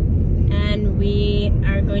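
Steady low rumble of road and engine noise inside a moving car's cabin, with a drawn-out hesitant 'uh' from a voice about a second in.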